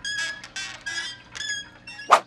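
A run of short, high-pitched squeaks at about the same pitch, about two a second, with a musical, note-like quality.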